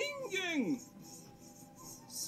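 An anime character's voice calling out a short line from the episode, high and sweeping in pitch, ending about three quarters of a second in; the rest is quiet.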